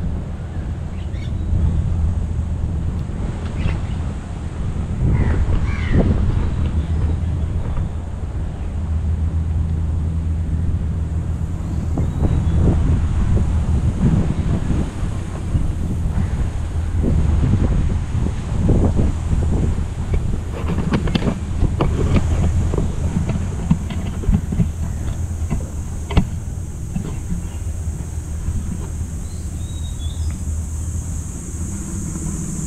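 Wind noise on a handheld camera's microphone, a steady low buffeting. Scattered knocks and rustles come and go as the camera is carried along a paved path, thickest in the middle.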